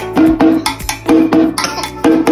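Music with a steady percussive rhythm: short, pitched struck notes falling in pairs, about four a second.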